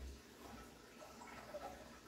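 Near silence: faint water noise from a large aquarium, its surface stirred by the filtration.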